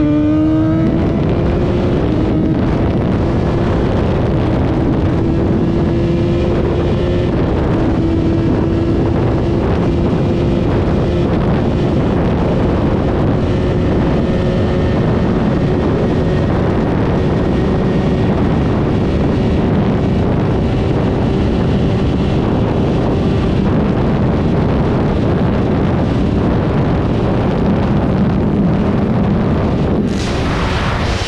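Yamaha XJ6's 600 cc inline-four engine at full throttle, its revs climbing slowly as the remapped bike accelerates toward top speed. Heavy wind noise on the microphone runs under it.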